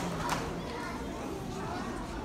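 Many children chattering and talking at once, a steady background hubbub of young voices.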